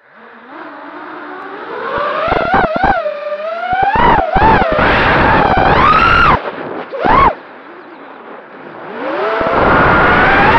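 FPV racing quadcopter's brushless motors spinning up from the ground and whining in flight, the pitch rising and falling with each throttle change. There are several sharp throttle punches, and a quieter stretch just after the middle before the motors climb again near the end.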